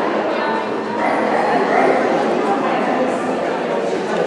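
A dog barking over the steady chatter of a crowd in a large hall.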